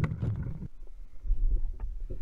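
Wind buffeting a camera microphone on a kayak at sea: a low rumble that swells about one and a half seconds in, with a sharp click at the start and a few faint knocks.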